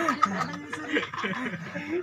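A man and a woman laughing together, in short chuckles.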